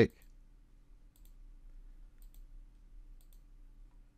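A few faint computer-mouse clicks, scattered and a second or so apart, over a low steady background hum.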